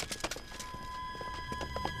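Irregular clicks and clatter of soldiers' footsteps and rifles being handled, over sustained tense music whose low notes swell in over the second half.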